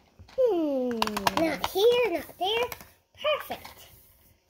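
A child's voice making play noises rather than words: one long sliding-down vocal sound, then three short high rising-and-falling syllables. A quick run of sharp clicks comes about a second in, from plastic toys being handled.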